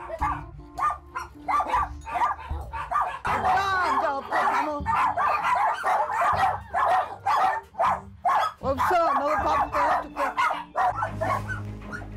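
A pack of dogs barking and yipping in quick, overlapping calls, many at once, clamouring for food that has run out.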